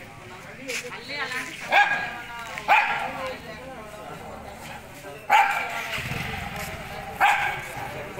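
A dog barking four times, short and sharp, with people talking in the background.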